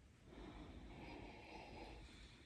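A person sniffing a glass of red wine: one long, faint breath in through the nose, starting about a quarter second in.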